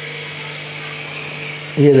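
A steady low hum under a soft, even watery hiss from a pot of lamb pieces simmering gently in oil and water over a low gas flame as its glass lid is lifted off.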